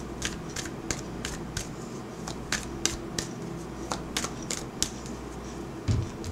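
Tarot deck being shuffled by hand: a run of sharp, irregular card clicks, two or three a second, with a louder low thump near the end.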